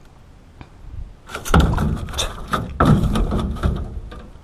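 Handling noise on an aluminium boat floor: a run of loud rustling, clattering knocks that starts about a second in, as a caught bass and a tape measure are moved about.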